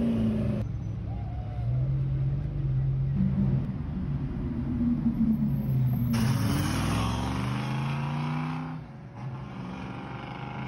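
A string of short clips of high-performance car engines revving and running, the pitch rising and falling, with abrupt cuts from one car to the next.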